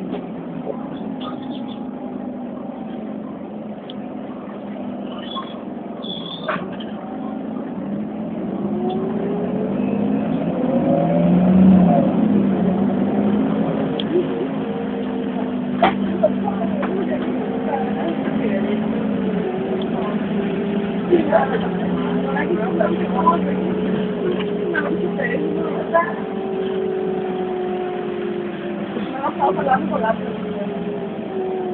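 Iveco Cursor 8 CNG engine of an Irisbus Citelis city bus, heard from inside the cabin while the bus is under way: its drone rises in pitch and grows louder as the bus speeds up about a third of the way in, changes note about two-thirds of the way in, then runs on steadily. Scattered sharp clicks and knocks come through over the engine.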